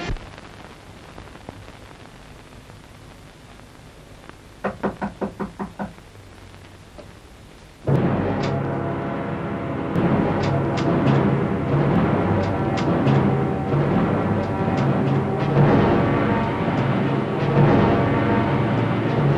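Film soundtrack music. It is quiet at first, broken by a short run of about seven quick pitched strokes halfway through. About eight seconds in, a loud, tense suspense score comes in suddenly, with low sustained drum-like notes and sharp high strikes.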